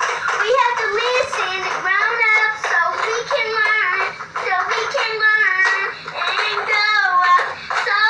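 A young girl singing continuously while playing a toy guitar that gives out electronic music.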